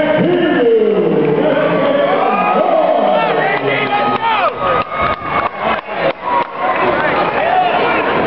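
Crowd shouting and cheering, many voices calling out at once with rising and falling yells. Midway through comes a quick run of sharp smacks, about four a second, for roughly two seconds.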